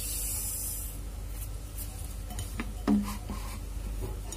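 Brown sugar poured from a plastic cup into a stainless-steel saucepan of water: a soft hiss of pouring granules in the first second, then quieter.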